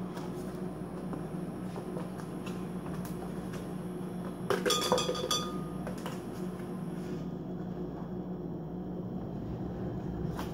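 A short run of ringing clinks about four and a half seconds in, things knocking against a glass blender jar as strawberries are tipped in, over a steady low hum in the kitchen.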